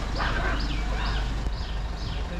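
A bird calling over and over in short falling notes, about three a second, over a steady low rumble.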